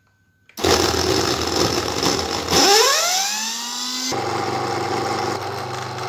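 Electric blender starting about half a second in and blending grated coconut, curry leaves and water. About two and a half seconds in its pitch rises and levels off, and after about four seconds it runs with a steadier hum.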